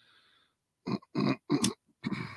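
A man's voice giving three short low grunts in quick succession, the last ending in a light sharp click.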